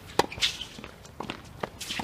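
Tennis racket striking the ball in a backhand, a sharp crack about a fifth of a second in and the loudest sound. After it come several quick footsteps and short shoe scuffs and squeaks from players moving on the hard court.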